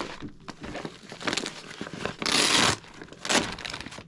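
Plastic wrapping crinkling and a cloth pouch rustling as hands dig a bagged power cord out of an accessory pouch, in irregular bursts with the loudest crinkle about two and a half seconds in.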